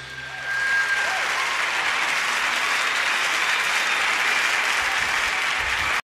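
Audience applause, swelling in about half a second in and then holding steady.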